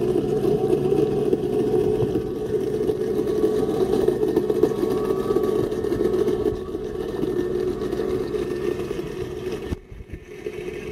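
TigerShark PM1612 robotic pool cleaner running on the pool floor, its pump motor and drive giving a steady mechanical hum heard through the water, a little quieter after about six and a half seconds and breaking off briefly near the end.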